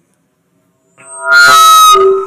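Loud public-address feedback howl: several steady ringing tones swell up about halfway through, hold for about a second at full level with a knock in the middle, then begin to fade, as a live microphone feeds back through the speakers.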